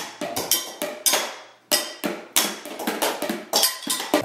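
Improvised drumming on kitchenware: wooden spoons beating upturned plastic mixing bowls, a colander and pots, a rapid, uneven clatter of overlapping hits from several players at once, with a short lull about one and a half seconds in.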